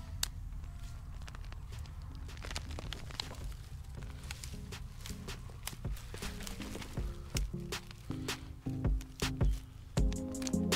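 Background music with low, changing notes, over crackling, snapping and knocking from soil and dead woody stalks as a clump of Jerusalem artichoke tubers is dug and pulled up by hand. The knocks grow louder and closer together near the end.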